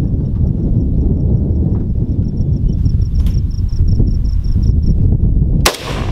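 A single loud, sharp rifle shot from a semi-automatic rifle, near the end, over a steady low rumble of wind on the microphone.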